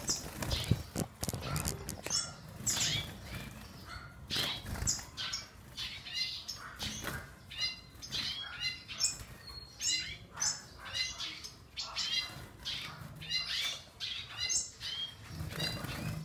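Small caged finch-like birds fluttering and flapping their wings against the cage, with frequent short, high chirps throughout.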